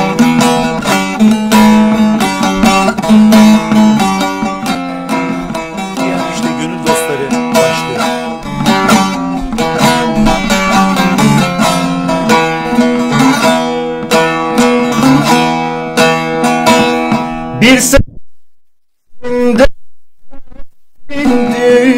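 Bağlama (Turkish long-necked saz) played solo: a quick run of plucked notes over a steady low note that stops suddenly about two seconds before the end.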